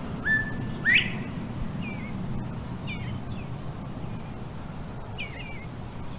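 Birds chirping: a string of short calls with quick pitch slides, the loudest a held note that sweeps sharply upward about a second in, with more chirps around two, three and five seconds in. A steady low background rumble runs underneath.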